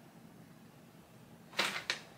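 Near silence with faint room tone, broken near the end by two short hissing rustles, the second one briefer.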